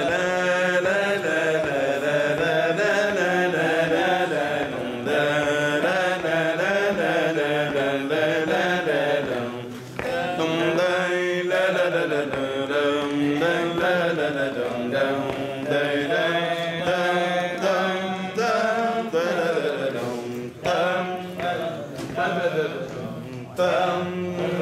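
A male cantor singing a Middle Eastern-style piyyut improvisation in maqam Rast, without words: long melismatic phrases with sustained, wavering notes and ornate turns, broken by brief breaths.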